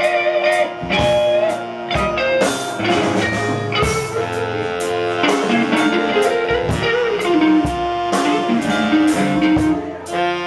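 Live blues band playing: saxophones hold notes over electric guitar and a drum kit keeping a steady beat.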